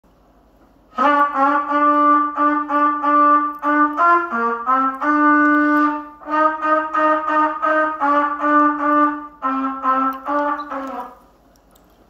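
Trumpet played solo: a string of short, separately tongued notes, mostly repeated on one pitch, starting about a second in. Near four seconds the line dips lower and climbs higher, a longer note is held around five seconds in, and the playing stops about eleven seconds in.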